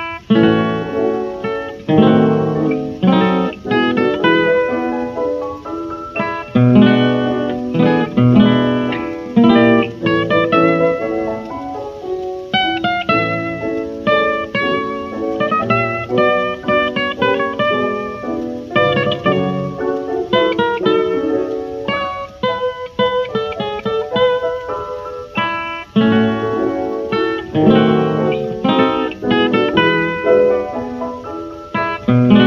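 Jazz guitar playing plucked melody runs and chords at a lively pace.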